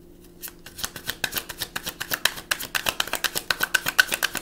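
A deck of reading cards being shuffled by hand: a quick run of crisp card flicks, about eight a second, starting about half a second in.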